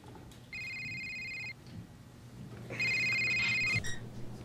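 Phone ringing: two electronic rings, each about a second long, the second louder than the first.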